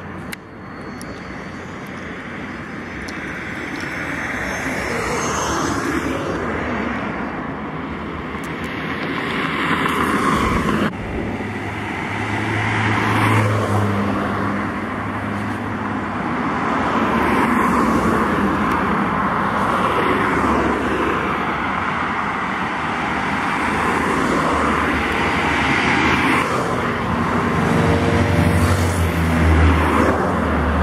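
Heavy diesel trucks and cars passing on a highway: a continuous road and tyre noise that swells and fades as vehicles go by, with an abrupt change about a third of the way in. Near the end the low engine note of an approaching Volvo FH tractor-trailer grows louder.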